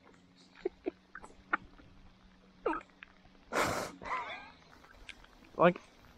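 A man's brief wordless vocal sounds, with a sharp breathy exhale or gasp about three and a half seconds in, followed by a drawn-out groan. A faint steady hum runs underneath until that exhale and then stops.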